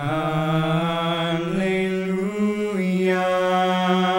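Three young male voices singing long held notes in close harmony, the chord shifting about one and a half seconds in and again near three seconds.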